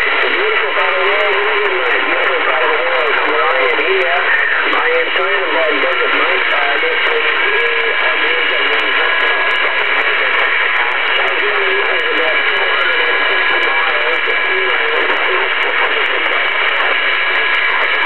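A distant station's voice coming in over a long-distance radio path through a Uniden Washington CB base station's speaker, thin and barely intelligible under a steady wash of static hiss. A faint steady whistle sits under it through the middle stretch.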